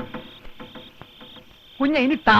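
Crickets chirping: a high trill broken into pulses about half a second long, repeating steadily. A man's voice starts near the end.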